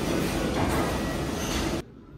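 Loud, steady background noise of a working commercial kitchen, a dense roar with no clear pitch. It cuts off abruptly near the end to the much quieter room tone of a large hall.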